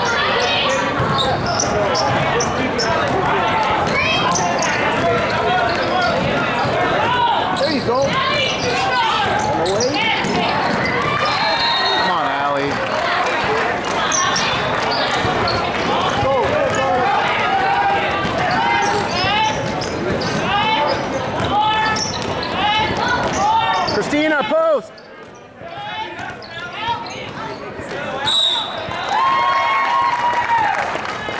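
Indoor basketball game: a ball bouncing on the court, sneakers squeaking and players and spectators calling out, echoing in a large hall. The sound drops off suddenly for a moment about 25 seconds in.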